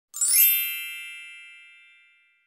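A shimmering sparkle chime sound effect: a cluster of high bell-like tones that sets in quickly and rings away over about two seconds.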